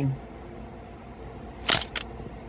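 Camera shutter click, a sharp two-part snap near the end, over faint steady background noise.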